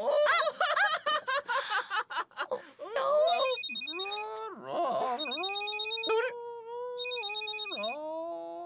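Mobile phone ringing with an electronic trilling ringtone in three bursts, starting about three seconds in, over long drawn-out sliding tones. Before the ring there are voices and laughter.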